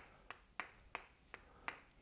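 Chalk tapping against a blackboard while writing Korean characters: about six faint, sharp clicks, one as each stroke begins.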